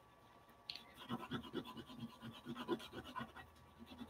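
Pentel oil pastel scribbled on drawing paper with light pressure: faint, quick, irregular scratchy strokes that start about a second in.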